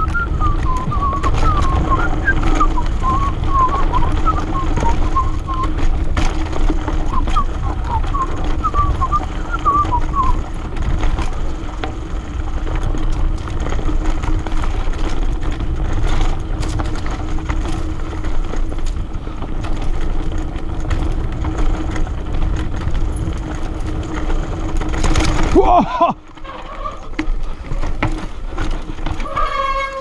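Mountain bike rolling fast down a dirt forest trail: a steady rumble of tyres and wind on the camera mic, with short high chirps in the first ten seconds. Near the end comes a brief loud sound falling in pitch, and then the rumble drops away as the bike slows hard on a rear brake that barely brakes.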